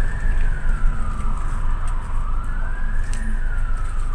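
An emergency vehicle siren in a slow wail, its pitch falling and rising twice, heard from inside a bus over the bus's low rumble.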